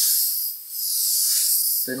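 Paasche Millennium bottom-feed airbrush spraying paint: a steady hiss of compressed air and paint from the nozzle as lines are sprayed, easing briefly about half a second in between strokes.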